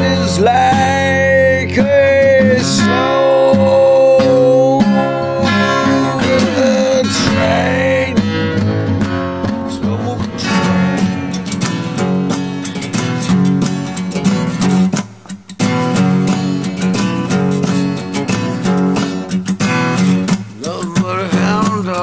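Instrumental break of a folk song on acoustic guitar. A held lead melody slides up into its notes over the chords for about the first seven seconds, then the guitar carries on with quick picked and strummed notes over a steady bass.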